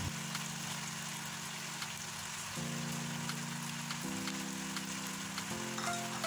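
Soft background music of held chords that change about every one and a half seconds, over faint crackling of food sizzling in the wok.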